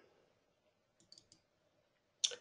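Near silence, with a few faint computer mouse clicks a little over a second in.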